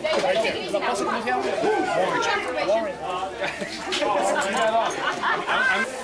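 Several people talking at once: overlapping conversational chatter, with no single voice clear.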